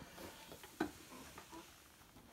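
Faint handling sounds as a heavy plastic monster box full of silver coins is lowered onto a bathroom scale, with one light knock a little under a second in.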